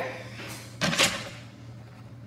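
Short rustles and knocks of grocery packaging and a plastic bottle being handled on a table, two quick sounds about half a second and a second in, the second the loudest.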